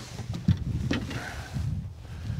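Wind buffeting the microphone in a small boat, an uneven low rumble, with two light knocks about half a second and a second in.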